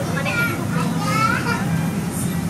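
A child's high-pitched voice, rising in pitch near the middle, over the steady chatter and hum of a busy street-food stall, with faint music in the background.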